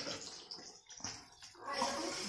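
A few faint clinks of cups and steel utensils being handled, then water poured from a cup into a steel saucepan starts splashing near the end.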